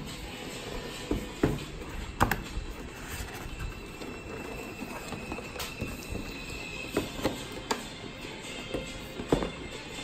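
Handling sounds from opening a cardboard collector box and sliding out its clear plastic blister tray: several sharp knocks and taps, grouped about a second in, again about seven seconds in and near the end, over soft background music.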